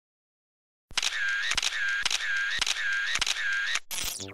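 After about a second of silence, a camera-shutter sound effect clicks about six times, a little under twice a second, with a wavering high whine between the clicks. Near the end comes a short falling electronic glitch sweep.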